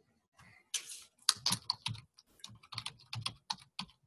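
Typing on a computer keyboard: a quick, irregular run of key clicks and taps, picked up by an open microphone on a video call.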